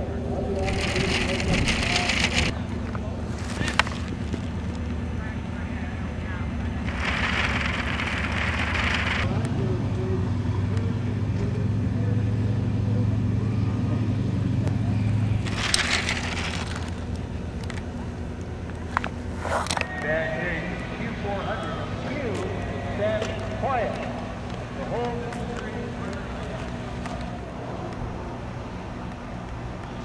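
Indistinct voices over a steady low engine hum that strengthens for several seconds in the middle, with a few short bursts of hiss.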